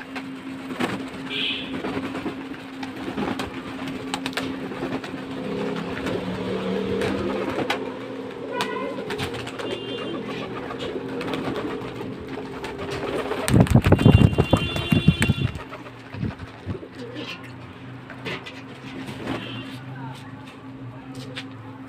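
Domestic pigeons cooing while several bathe in a shallow basin of water, flapping wet wings and splashing. A loud flurry of wingbeats and splashing comes about two-thirds of the way through.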